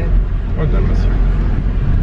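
Steady low rumble of a car's engine and tyres heard inside the cabin of the moving car.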